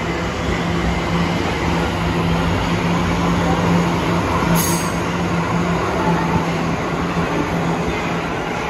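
Tokyo Metro Ginza Line subway train pulling out of the station and running past close by, a steady rumble of wheels on rail with a low hum throughout. A brief high-pitched burst about halfway through.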